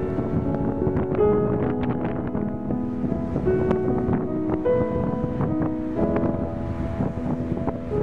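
Background piano music over gusty wind buffeting the microphone; the wind noise cuts off at the end, leaving the piano alone.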